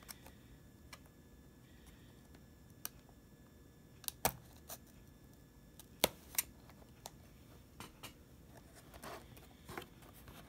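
Utility knife slitting the clear tape seals on a small cardboard box: a few sharp clicks and snaps, the loudest about four and six seconds in, then a short rustle of the cardboard flap being opened near the end.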